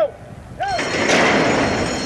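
A thoroughbred starting gate's front doors spring open with a sudden loud clash about half a second in. The electric starting bell rings steadily over it as the horses break.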